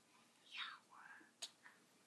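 Near silence with faint whispering, and a single light click about one and a half seconds in.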